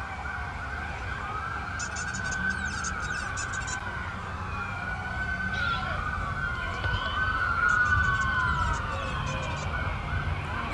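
Several police car sirens wailing at once, their pitches rising and falling and crossing over one another, over a steady low rumble.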